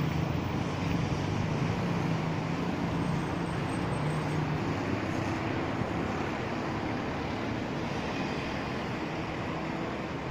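Steady hum of motor engines with traffic-like noise and wind on the microphone. A lower engine drone fades about halfway through, while a slightly higher one carries on.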